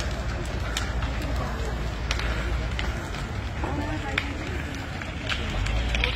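Wooden houses burning in a large fire, with sharp cracks and pops of burning timber scattered over a steady low rumble. Indistinct voices of onlookers come through.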